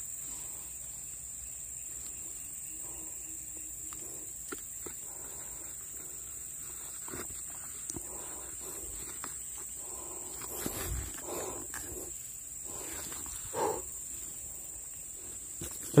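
A steady high-pitched insect drone, with scattered faint rustles and short sounds and one slightly louder brief sound a little before the end.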